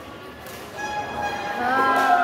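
Drawn-out calls from people courtside. A high, steady held call begins about a second in, then a man's long shout falls in pitch near the end.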